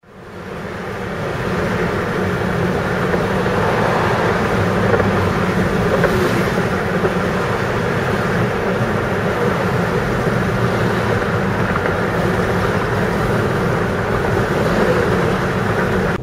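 Steady road and wind noise of a car travelling at highway speed, fading in over the first second.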